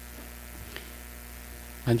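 Steady, low electrical mains hum with no speech over it. A man's voice starts again just before the end.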